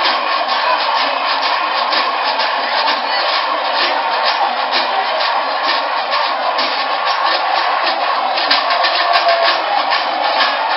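Kerala temple-festival percussion, drums and cymbals beaten in a fast, even rhythm, over the noise of a crowd.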